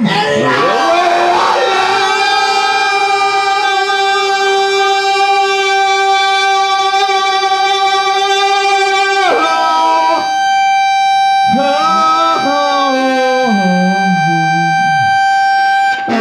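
Live rock duo: a singer holds one long, steady note over a ringing electric guitar tone for about nine seconds. Then the voice slides up and down in pitch while the guitar tone keeps ringing at a single pitch.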